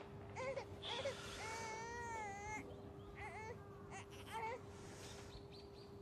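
An infant crying faintly in short cries, with one longer cry about two seconds in, over a steady hum.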